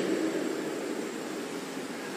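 Steady hiss of background noise in a pause between spoken phrases, with a faint high whine. The echo of the last word dies away during the first second.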